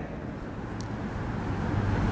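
Steady background noise, a low rumble with hiss, with no distinct sound in it, getting slightly louder toward the end.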